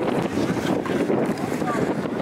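Wind buffeting the microphone, a steady loud rush, with faint voices in the background.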